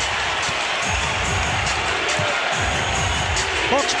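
Steady arena crowd noise, with a basketball being dribbled on the hardwood court as a few low thuds.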